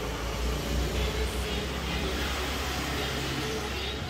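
BMW R1250GS boxer-twin engine idling with an uneven low pulse. This is the rough cold idle the owner traced to camshaft timing that was out of sync.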